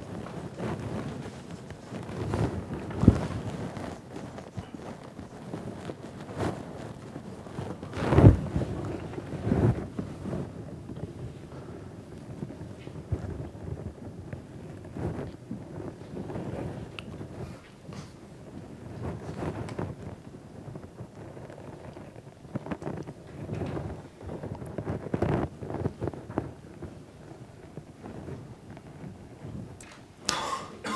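Rustling and irregular low thumps of handling noise close to the microphone, with the loudest thumps about 3 and 8 seconds in.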